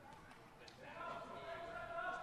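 Faint football stadium crowd, with held voices swelling louder about a second in.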